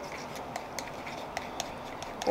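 A metal teaspoon stirring gum arabic and water in a small plastic cup, with faint, irregular light clicks and scrapes as the spoon knocks against the cup.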